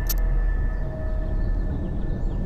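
Ominous soundtrack drone: a steady low rumble under faint held high tones, with a short sharp hit just as it begins.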